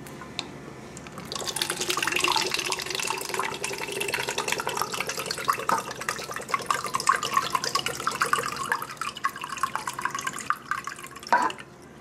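Chicken broth poured from a can into a plastic measuring cup in a steady splashing stream, starting about a second in and stopping shortly before the end, the pitch creeping up as the cup fills.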